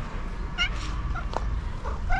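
Orange tabby cat meowing as it comes closer: a short meow about half a second in and another near the end.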